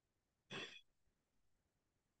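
Near silence, broken about half a second in by one short intake of breath from the presenter.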